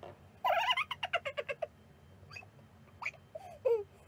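A woman's high-pitched wordless squeals and hums: a wavering cry about half a second in, then a few short cries, the last one falling in pitch.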